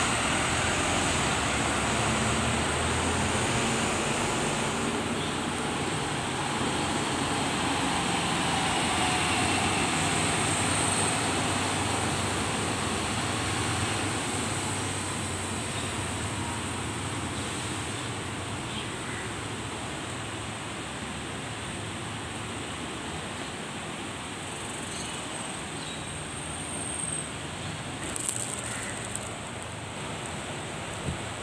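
Vehicle traffic noise around a bus interchange: a steady rumble and hiss, loudest for the first dozen seconds and then slowly easing, with a faint falling whine in the middle.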